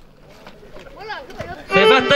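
A quiet lull with low background murmur, then people's voices, with a man speaking loudly near the end.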